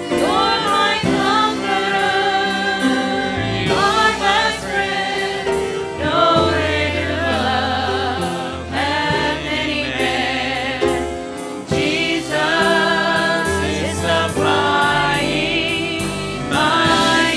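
A small group of women singing a gospel praise song into microphones, with piano accompaniment. They hold long notes with vibrato.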